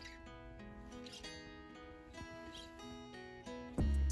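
Background music: a soft plucked guitar melody with held notes, and a loud low bass thump coming in near the end.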